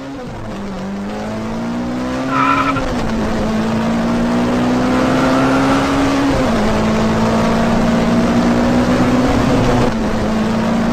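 Car engine sound effect revving, its pitch climbing slowly and dropping back sharply several times, like gear changes, with a brief high squeal about two and a half seconds in.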